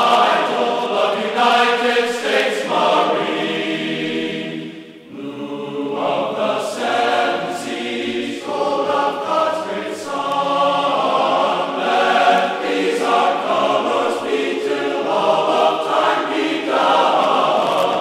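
Choral music: a choir singing held chords that change every second or two, dipping briefly about five seconds in.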